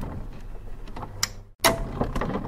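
Outro animation sound effects: a few short clicks and swishes over a low steady hum. The audio drops out briefly about one and a half seconds in, then a sharp hit.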